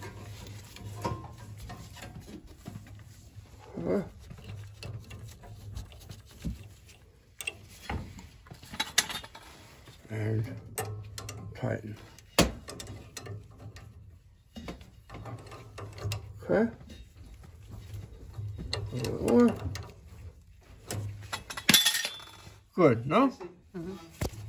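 Small clicks and knocks of hand work at a gas valve as copper thermocouple and pilot-tubing fittings are seated and tightened. A low steady hum runs underneath, and short muffled voice sounds come now and then.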